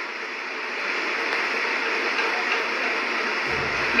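Steady hiss-like noise with no speech, carried by a television broadcast's sound, with a brief low rumble in the last half second.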